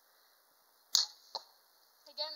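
Bear G2 Cruiser compound bow shot: a sharp, loud snap of the string on release about a second in, then less than half a second later a smaller knock of the arrow striking a block target.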